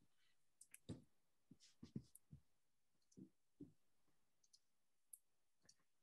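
Near silence with about ten faint, short clicks scattered irregularly over a few seconds.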